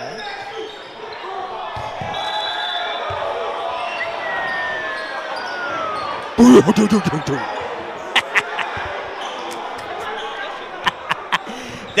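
Basketball dribbled on a hardwood gym court, sharp bounces coming in quick runs of about four or five a second in the second half, over the chatter of a crowd in a large hall. A sudden loud burst about six seconds in is the loudest moment.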